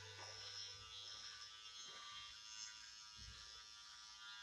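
Faint, steady buzz of a Powertec TR-658 cordless hair and beard trimmer running as it is drawn over neck and cheek stubble.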